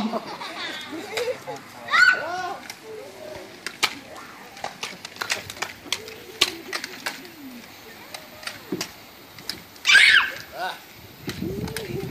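Excited voices shouting, squealing and laughing, with loud high outbursts about two seconds in and again near the end. Many sharp clicks are scattered throughout, from toy blasters being fired and handled.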